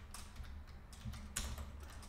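Computer keyboard being typed on: a handful of quick, uneven keystroke clicks, faint.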